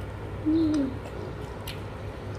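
A person's short closed-mouth "mm" hum about half a second in, dipping slightly in pitch, followed by a light click near the end over a steady low room hum.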